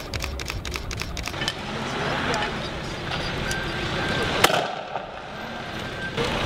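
Street clash noise with voices and a flurry of sharp clicks in the first second or so, then a single loud sharp bang about four and a half seconds in.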